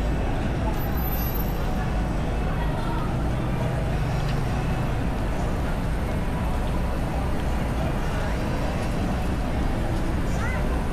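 Downtown street traffic: car engines running and passing in a steady low rumble, with passers-by's voices in the background.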